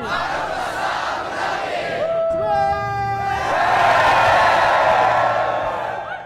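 A large group of young people cheering and yelling together, with a few voices holding long shouts; the cheer swells to its loudest past the middle.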